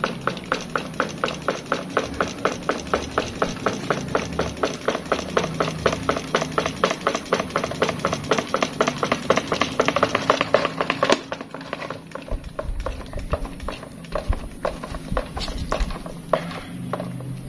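An electric stand fan running with a homemade red triangular blade attachment, clacking in a fast regular rhythm of about five knocks a second over a low motor hum. About eleven seconds in, a sharper knock is heard and the clacking turns sparser and uneven.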